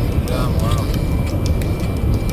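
Steady low rumble of a car's tyres and engine at highway speed, heard inside the cabin, with a short bit of voice about half a second in.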